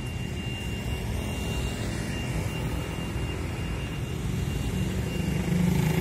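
Steady low engine rumble of a motor vehicle, growing a little louder near the end, with a faint thin high whine in the first half.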